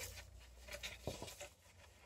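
Faint rustling of a sheet of paper held against a folding knife's steel blade, with a light tick about a second in, as the blade starts into the paper.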